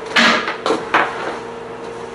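A short rustling clatter followed by two sharp knocks about a second apart, as objects are handled, over a steady faint hum.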